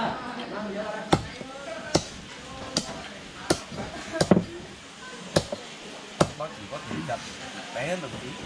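A cleaver chopping crispy-skinned roast pork on a chopping board: about eight sharp, separate chops, roughly one a second, with two in quick succession around the middle.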